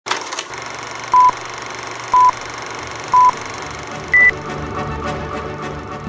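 An electronic countdown signal: three short beeps at one pitch about a second apart, then a fourth, higher-pitched beep, over a steady hiss and low hum.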